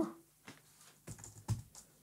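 Computer keyboard being typed on: a handful of separate, faint keystrokes entering a short word.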